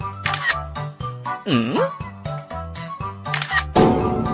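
Light, upbeat background music with a steady beat. A camera shutter sound clicks twice, about a third of a second in and again near the end. Around the middle, a pitched swooping sound dips and then rises.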